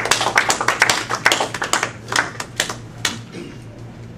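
Small audience clapping: a scatter of separate claps that thins out and stops about three seconds in.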